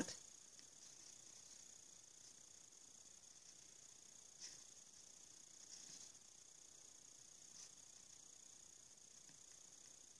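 Near silence: a faint steady high hiss, with a few faint soft scrapes, about four and a half, six and seven and a half seconds in, of a small soft paintbrush dabbing metallic powder onto a hot glue bangle.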